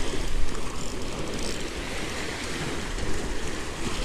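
Surf washing and splashing against the granite jetty rocks, a steady rushing noise with wind buffeting the microphone.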